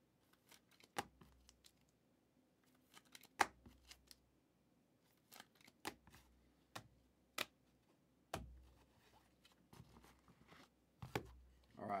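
Sports trading cards in plastic sleeves being handled: scattered sharp clicks and taps at irregular intervals, several with a soft thump as they are set down or tapped together.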